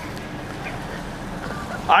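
Steady street ambience with traffic running along a nearby road, an even rushing hiss with no distinct events.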